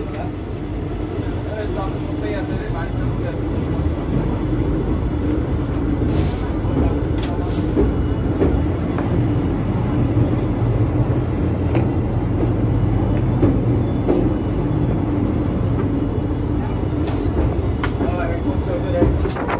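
Passenger train running at speed, heard from an open carriage doorway: a steady low rumble of wheels on rail that grows louder a few seconds in as the train crosses a steel truss bridge, with a thin high whine and a few sharp clicks.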